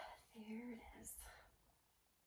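A woman's faint, breathy voice: a short soft hummed or whispered sound about half a second in, then a breath.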